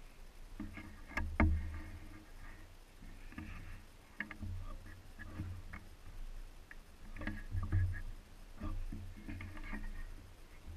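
Scattered small clicks, creaks and rustles of a hunter shifting in a tree stand with a compound bow and camo clothing close to the microphone, with low thuds and a sharper knock about a second and a half in.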